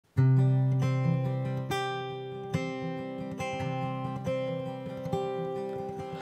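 Acoustic guitar song intro: plucked notes and chords ringing out, a new one struck a little under once a second, the sound fading slowly between them.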